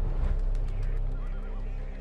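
Animal sound effects over a steady low rumble: a quick run of soft fluttering clicks, and a short wavering animal call a little past the middle.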